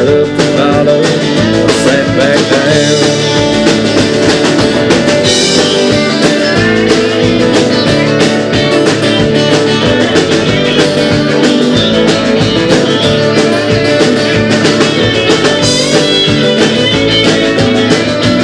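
Live country band playing an instrumental break, with an electric guitar taking the lead over strummed acoustic guitar and a steady beat.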